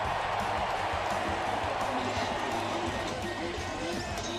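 Ballpark crowd cheering a home run, the roar strongest at first and easing off, with music coming in underneath about halfway through.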